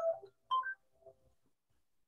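Three short, pitched electronic beeps in the first second or so, each at a different pitch.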